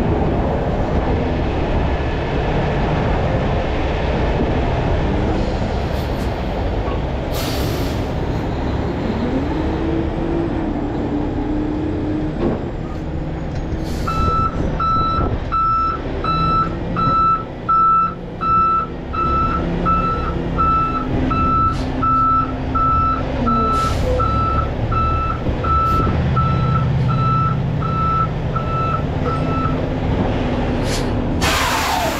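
Heavy-duty tow truck's diesel engine running as the truck is manoeuvred, with a short hiss a few seconds in. From about halfway through its backup alarm beeps steadily, a little over once a second, as it reverses.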